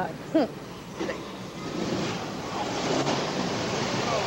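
Street traffic noise: a steady, even rush that swells about a second and a half in and holds.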